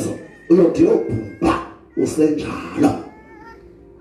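A man preaching through a microphone and PA in loud, shouted phrases: four bursts with short gaps, dying away about three seconds in. Faint steady tones follow.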